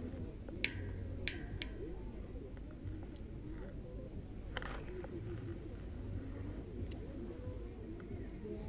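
A few short sharp clicks, the loudest about half a second in, over a faint steady low background: handling noise from a spinning rod and reel.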